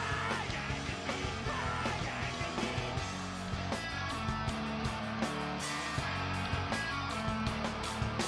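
Punk rock band playing live between sung lines: electric guitars, bass guitar and drums.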